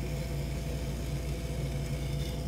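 Electric potter's wheel motor humming steadily as the wheel head spins, with a metal trimming tool shaving a thin ribbon off a stiff, nearly too-dry clay cylinder.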